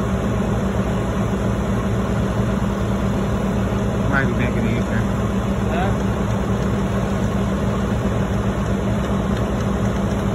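Heavy truck diesel engine running steadily with a deep, even hum.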